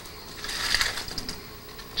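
Latex modelling balloons rubbing and squeaking against each other as they are handled and pushed into place, loudest from about half a second to a second in.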